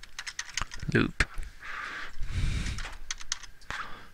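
Computer keyboard typing: a scatter of sharp key clicks as a short word is typed.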